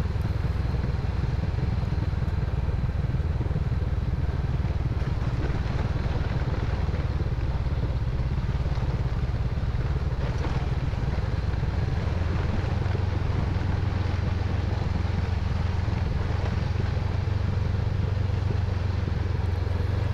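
Motorcycle engine running steadily at low revs as the bike rolls down a gravel track, with a constant low rumble and a hiss of tyre and gravel noise over it.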